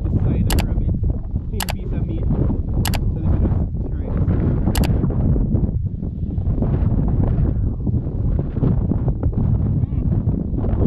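Strong wind buffeting the microphone, a heavy low rumble throughout, with four sharp clicks in the first five seconds.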